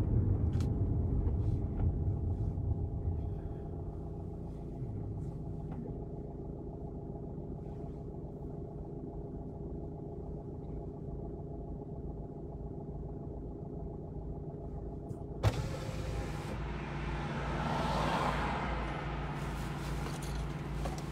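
Car engine and road noise heard from inside the cabin as the car slows to a stop, then a steady idling hum. About fifteen seconds in there is a sharp click, followed by louder outside traffic noise that swells and fades.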